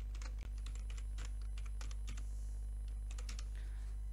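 Typing on a computer keyboard: a run of irregular keystroke clicks, over a steady low electrical hum.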